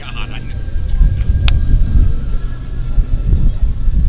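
Low, gusting rumble of wind buffeting the microphone, swelling about a second in, with faint crowd voices underneath and a single sharp click about one and a half seconds in.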